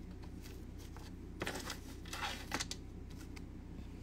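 Faint crinkling of small plastic bags holding pendants as they are set down in a jewelry display tray, a few brief rustles in the middle, over a low steady hum.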